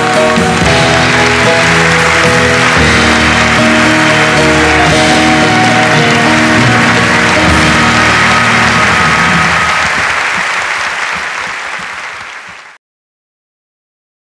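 Applause over the sustained closing chords of the song's accompaniment, fading out near the end.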